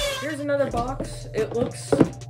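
A boy talking over quiet background music with a steady low beat, with one short sharp knock near the end.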